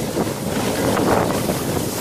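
A sled sliding fast down a snow track: a continuous noisy rush of the sled over the snow, with wind buffeting the microphone.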